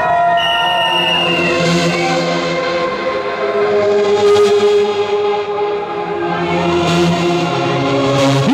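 Hardcore dance music played loudly over a club sound system: long held synth chords with no strong beat standing out.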